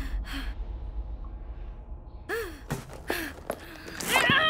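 A young woman's breathing and gasps: two sharp breaths at the start, then a few short gasps falling in pitch in the second half, over a steady low rumble.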